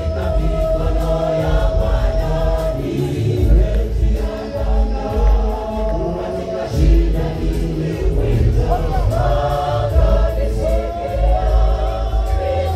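Gospel choir singing live with a lead vocalist on microphone, amplified through a PA, over a heavy pulsing bass accompaniment.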